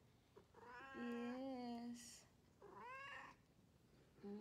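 Domestic cat meowing twice: a long, drawn-out meow about half a second in, then a shorter meow rising in pitch about three seconds in.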